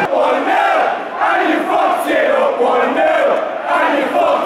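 Large football crowd in a stadium stand, many voices chanting and shouting together, loud and continuous.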